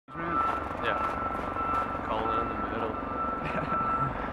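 Low outdoor rumble with a steady high-pitched tone throughout and people talking quietly in the background.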